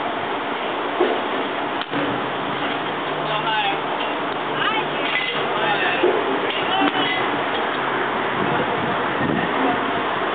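Steady outdoor background noise with faint voices in the distance and a few sharp knocks, about a second in and again near six seconds in, during softball batting practice in a cage.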